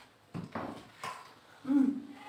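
A few short mouth noises of people eating juicy watermelon pieces in quick bites. Near the end a voice urges 'eat!'.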